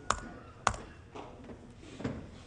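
Computer keyboard typing: two sharp key taps about half a second apart, then a few fainter taps.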